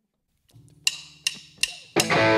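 Drumsticks clicked together four times at an even tempo, a drummer's count-in, over a low steady hum; the full band comes in on the last count.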